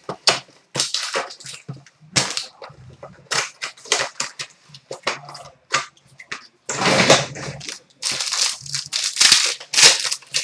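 Foil trading-card pack wrappers crinkling and tearing as packs are ripped open and the cards handled: an irregular run of sharp crackles and rustles.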